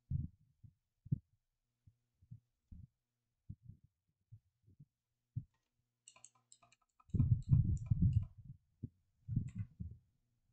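Typing on a computer keyboard: scattered dull keystroke thumps, then a faster run of sharper key clicks from about six seconds in, and a few more near the end.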